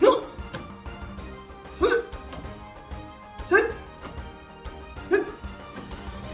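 A man's short, sharp shouts, four of them about a second and a half apart, each marking one repetition of a martial-arts drill, over steady background music.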